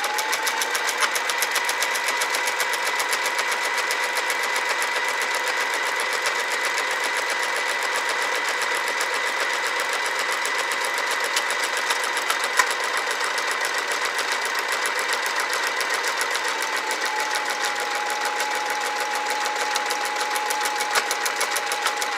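Electric household sewing machine running continuously while it stitches a one-step automatic buttonhole through its buttonhole foot: a steady motor whine over rapid needle strokes. The whine drops slightly in pitch about three-quarters of the way through.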